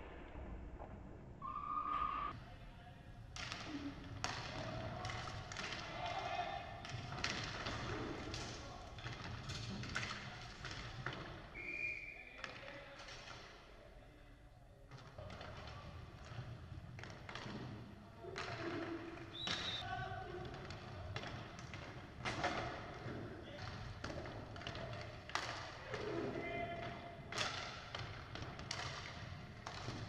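Live inline hockey game sound in a hall: repeated sharp clacks and thuds of sticks and puck hitting the wooden floor and boards, over the rumble of skate wheels, with players' voices calling out and a few brief high-pitched chirps.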